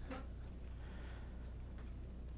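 Faint rustle of Kapton tape being peeled off a plastic bag, over a steady low hum.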